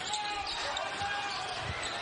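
Live basketball game sound: a basketball dribbling on the hardwood court over a steady background of arena crowd noise.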